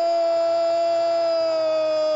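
A male football commentator's long, drawn-out goal cry: one loud held shout on a single note, sinking slightly in pitch.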